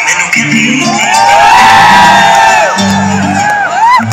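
Loud song with a sung melody and a pulsing bass line playing through stage loudspeakers, with a large crowd cheering and whooping over it.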